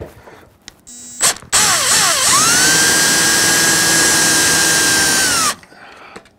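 Cordless drill boring out the support material that fills a hole in a 3D-printed PLA part. A short blip of the trigger about a second in is followed by about four seconds of running: its whine rises as it spins up, holds steady, then falls as it stops.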